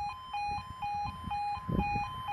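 Level crossing warning alarm sounding two tones, a higher and a lower note, alternating about twice a second. It warns that a train is approaching the crossing.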